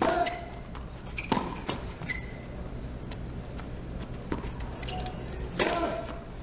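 Tennis ball struck by racquets on a hard court, a string of sharp hits spaced irregularly about a second apart, with brief shoe squeaks. A player's grunt comes with the serve at the start and again with a hit near the end.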